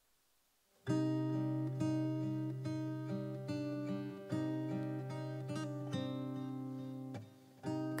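Steel-string acoustic guitar playing a song's introduction. It starts about a second in, with picked notes ringing over a sustained bass note.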